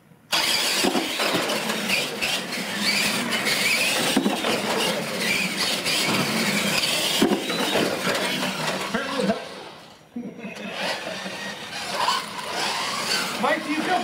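Radio-controlled monster trucks launching and racing: motors whining as they rev up and down, with tyres scrubbing and squealing on a hard tile floor. The sound starts suddenly just after the start signal, dips near the end, then picks up again.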